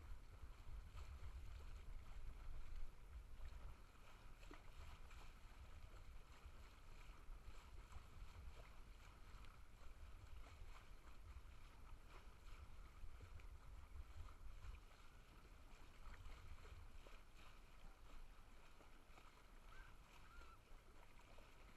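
Near silence with a faint, uneven low rumble.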